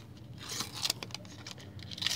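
Plastic wrapper of a Panini sticker packet rustling and crinkling in the fingers as it is worked open, with short rustles about half a second in and a louder crinkle at the very end as the tear begins.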